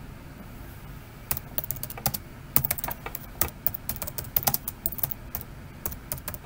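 Typing on a computer keyboard: irregular key clicks, several a second, starting about a second in.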